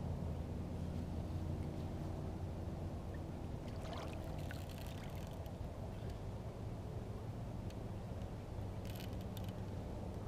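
Water lapping and trickling against a kayak hull over a steady low hum, with two short noises about four and nine seconds in.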